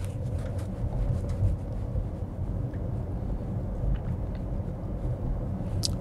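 Steady low rumble of road and tyre noise inside the cabin of a Tesla Model S Plaid electric car cruising at about 25 mph.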